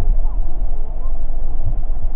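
Loud, steady low rumble with no distinct events.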